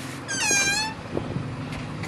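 A cat meows once, a short call of about half a second.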